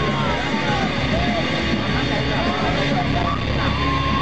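A live rock band's amplified sound heard from within the crowd: a dense, steady, bass-heavy rumble with crowd voices over it.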